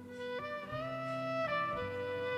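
Soft instrumental music from a live band between sung lines: a violin plays a few long held notes, stepping to a new pitch a couple of times, with no singing.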